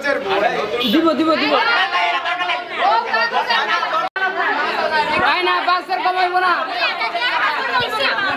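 A crowd of many people talking over one another at once. About four seconds in, the sound breaks off for an instant.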